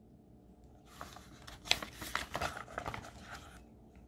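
A paper page of a picture book being turned: quiet rustling and crinkling starting about a second in and lasting about two and a half seconds, with a few sharper crackles.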